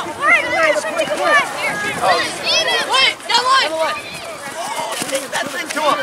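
Many voices shouting and calling over one another, some high-pitched, with no single clear speaker: spectators, coaches and players calling out during play at a youth soccer match.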